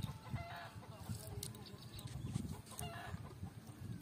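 Faint rustling of a fishing cast net being handled, with a few short bird calls, one about half a second in and another near three seconds in.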